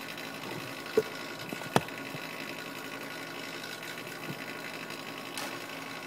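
Hot-air desoldering station running steadily, its air blowing with a faint hum beneath. Two short sharp clicks come about a second in and again under a second later.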